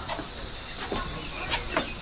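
Steady high-pitched insect drone, with a few faint short sounds scattered over it about a second in and again about a second and a half in.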